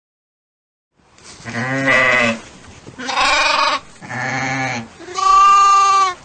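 Sheep bleating four times, starting about a second in, with short gaps between calls; the last bleat is the loudest.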